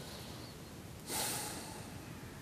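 A man's short, audible breath out through pursed lips, about a second in, lasting about half a second and fading. Otherwise only faint room tone.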